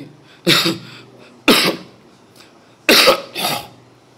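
A man coughing close to a microphone: three sharp, loud coughs about a second apart, the last followed by a smaller one.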